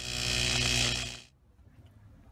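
An electric buzzing sound effect with a steady pitched hum under a hiss, lasting just over a second and then fading out, leaving faint room noise.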